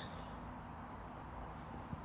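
Steady low background noise with one faint knock near the end.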